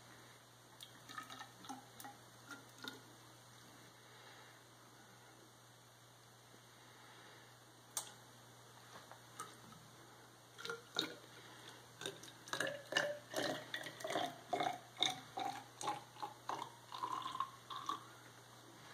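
Apple braggot wort pouring in gurgles from a glass jug into a tall graduated cylinder for a starting-gravity sample, starting about ten seconds in, its pitch rising steadily as the cylinder fills. Before that, a few faint ticks and one sharp click about eight seconds in.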